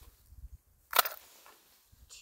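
A single sharp click about a second in, from fishing tackle being handled while a lure is changed, over faint low rumble.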